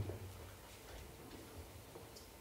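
Faint room tone with a few soft ticks scattered through it.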